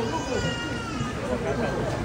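A person's high-pitched, drawn-out vocal sound, about a second long and gliding slightly down in pitch, with low voices beneath.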